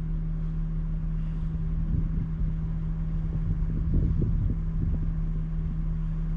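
A steady low hum under an uneven low rumble that swells a few seconds in; it sounds like a motor running nearby.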